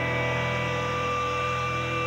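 Electric guitars left ringing through the amplifiers after the strumming stops: a steady, held drone of several sustained tones over a low amplifier hum.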